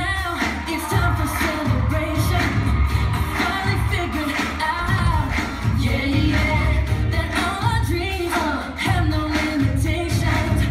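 Pop song with singing over a steady beat, about two beats a second.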